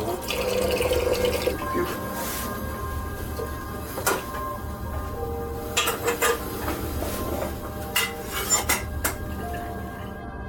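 Water running from a tap into a stainless-steel kettle, stopping about a second and a half in, followed by scattered metal clinks and knocks as the kettle is set on a gas stove's grate and its lid is handled.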